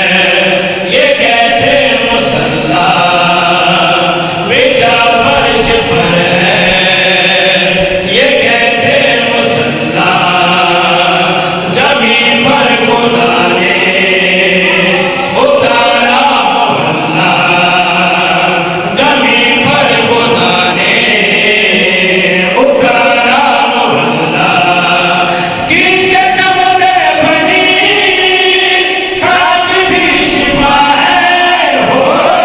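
A group of men's voices singing devotional verses together into microphones, amplified. The long held phrases follow one another without a pause.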